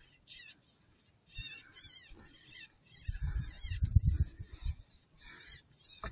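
Electronic predator caller playing a high, squeaky prey-distress call in short warbling bursts, repeated over and over. Low rumbling comes in the middle, with a sharp click near the middle that is the loudest moment.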